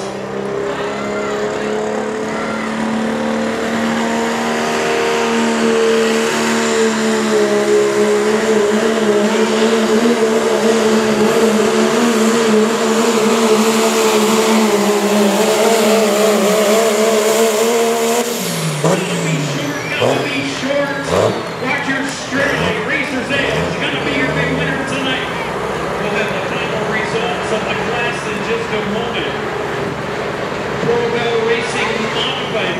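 Diesel pulling pickup at full throttle dragging a weight-transfer sled, its engine holding a steady high pitch that wavers as it labours. About eighteen seconds in the driver lets off: the engine pitch drops quickly and a high whine falls away, and the truck runs on at low revs.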